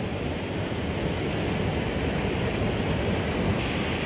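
Steady wash of low surf on a sandy beach, an even rushing noise with no single wave breaking out from it, with wind rumbling on the microphone.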